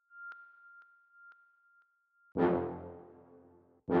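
Hip hop drum-kit samples auditioned one after another in a sample browser. First comes a steady high beep with faint pings about twice a second. A little past halfway a loud pitched stab hit with several notes ringing together fades for about a second and a half, then is cut off as the next hit starts near the end.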